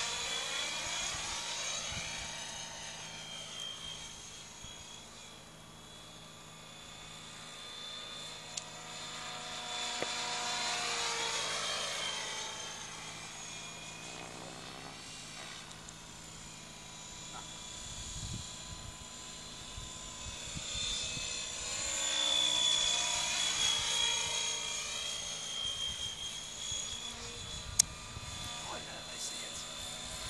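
Radio-controlled model helicopter flying overhead, with a steady high-pitched whine from its motor and rotor. The whine swells and bends in pitch twice, about ten and twenty-two seconds in, as the helicopter manoeuvres and passes.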